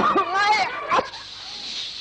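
Children chanting in unison in a classroom, the recitation stopping abruptly with a click about a second in, then a steady faint hiss.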